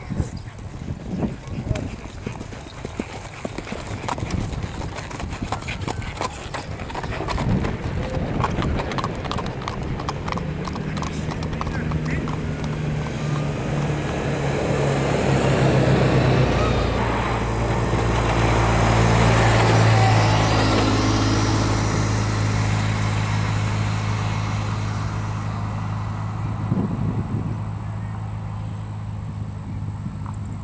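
Quick, even hoofbeats of a gaited horse moving past, thinning out over the first several seconds. Then a motor vehicle's engine comes up, hums loudest around the middle and slowly fades away.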